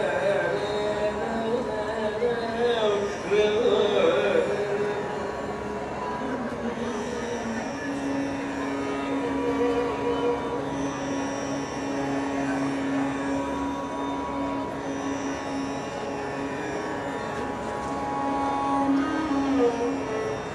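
Carnatic music: a male voice with violin accompaniment over a steady drone. The line wavers and ornaments for the first few seconds, then settles into one long held note from about seven seconds in.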